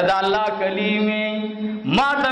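A man's voice intoning a dua (Islamic supplication) in a chanted, sing-song style, holding one long, steady note for over a second before gliding up into the next phrase near the end.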